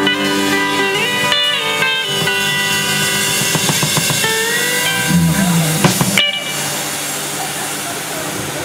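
Live band with electric bass, keyboard, guitar and drums ending a song: held chords ring out, with a few sharp hits, and the music stops suddenly about six seconds in, leaving a steady rushing noise.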